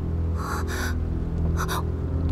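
A woman's short, breathy gasps of alarm, a quick pair about half a second in and another near the end, over background music holding a low sustained drone.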